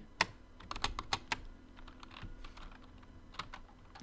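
Typing on a computer keyboard: sharp key clicks in short, irregular runs with gaps between them.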